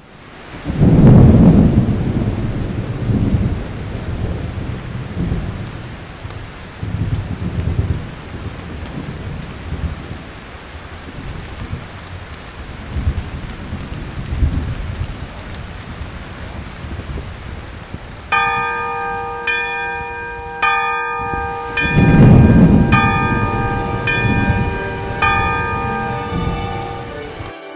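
Steady rain with rolling thunder. A loud crack and rumble comes about a second in, and another heavy peal near the end. About two-thirds of the way through, ringing bell tones join in, struck roughly once a second.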